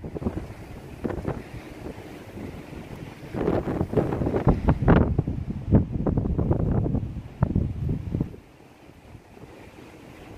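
Wind buffeting a smartphone's built-in microphone in gusts, loudest in the middle stretch, then easing off near the end.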